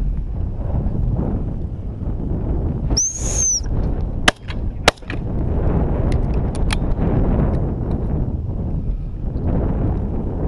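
Wind buffeting the microphone throughout. About three seconds in, one short high blast on a gundog whistle, then two shotgun shots about half a second apart, followed by a few small clicks.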